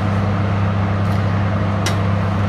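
Fan oven's convection fan running with a steady low hum and whoosh, heard through the open oven door; a light click near the end.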